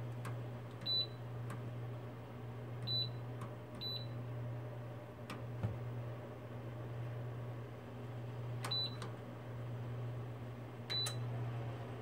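Electric fireplace heater's control panel beeping as its buttons are pressed to switch it off: five short, high beeps spaced irregularly, with a few faint clicks. A steady low hum runs underneath.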